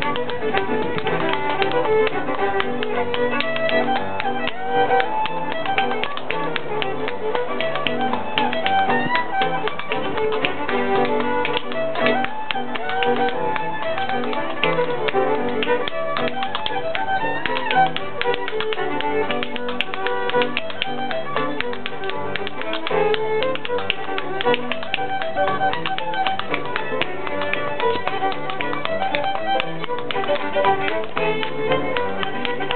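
A lively Irish dance tune played live on fiddle and piano, with rapid, steady percussive sean-nós dance steps tapping on the floor in time with the music.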